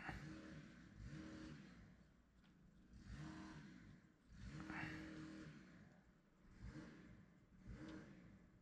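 Faint small petrol engine of yard-work equipment, revving up and falling back again and again, every second or two.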